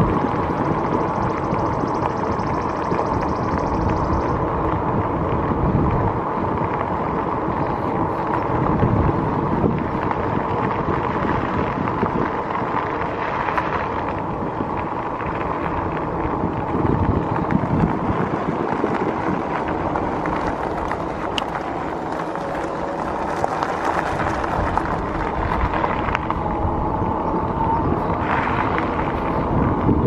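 Wind rushing over the camera microphone on a moving electric bike, steady throughout, with a faint steady whine underneath.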